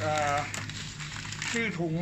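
Plastic bag of cat litter crinkling for about a second as it is handled and turned over, with speech just before and after.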